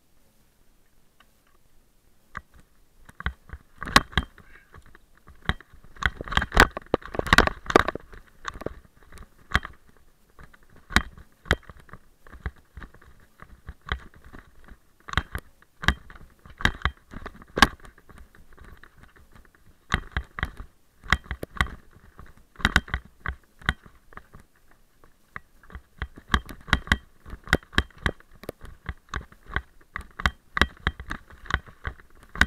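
Mountain bike clattering and rattling down a rough, rocky singletrack: irregular knocks and rattles as the wheels hit loose stones. It starts about two seconds in and is densest a few seconds later.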